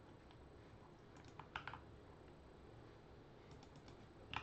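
Near silence broken by a few faint clicks of computer keys: a quick cluster of about four about a second and a half in, and a softer few near the end.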